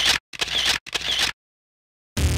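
Three camera-shutter clicks in quick succession, about half a second apart, as an added sound effect.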